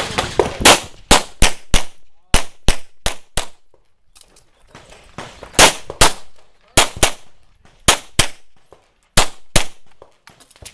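Pistol shots fired in quick pairs, about eighteen in all, with a pause of about a second and a half before the middle.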